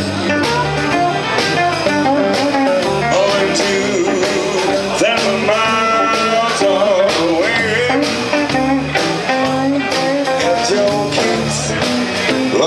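Live electric blues band playing with electric guitars, bass guitar and a drum kit keeping a steady beat.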